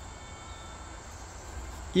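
Insects singing steadily, a thin continuous high trill typical of crickets, over a faint low rumble.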